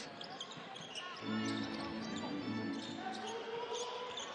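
Live basketball game sound in an arena: a basketball dribbling on the hardwood court, with low arena music coming in about a second in and crowd voices behind.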